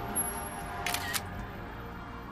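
A phone's camera-shutter screenshot sound, a quick double click about a second in, over background music.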